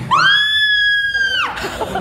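A girl's single long, high-pitched scream, held at a steady pitch for about a second and a half before breaking off. It is an acted horror-film scream, given on cue.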